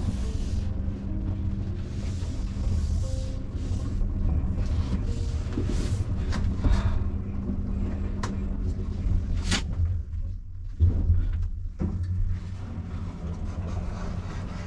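Thyssen passenger lift car travelling up between floors: a steady low hum and rumble, with a sharp click about nine and a half seconds in.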